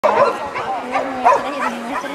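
Dog barking repeatedly in short, quick barks.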